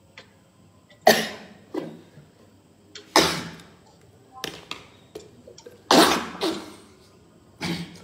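A man coughing in a run of sharp, separate fits, about seven bursts over several seconds, the loudest about one, three and six seconds in.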